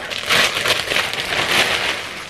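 Clear plastic garment bag crinkling and rustling as it is torn open by hand and a fabric top is pulled out of it.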